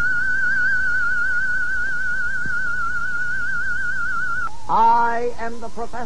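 A single high, wavering tone with an even, fast vibrato, theremin-like, held steady for about four and a half seconds and then cut off suddenly. A man's voice follows.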